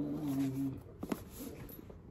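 A pet dog's low, steady growl that stops under a second in, followed by a couple of soft clicks.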